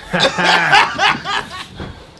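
Men laughing: a run of short, choppy laughs that is loudest in the first second and a half, then dies away.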